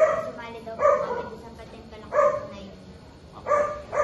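A dog barking four times, about a second apart, each bark short and sharp.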